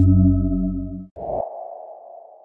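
Sustained, dark background-music chord that fades and cuts off about a second in, followed by a sudden low hit with a ringing tone that slowly dies away: a horror-style transition sound effect.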